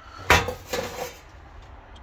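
Thin sheet-steel exhaust heat shield clattering on a workbench as it is handled: one sharp metallic clank a quarter of a second in, then a few lighter knocks.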